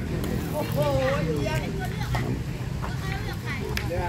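Voices of people talking in the background, over a steady low hum.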